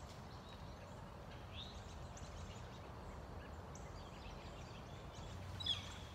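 Faint outdoor ambience: a low steady rumble with a few short, high bird chirps scattered through, the clearest cluster coming near the end.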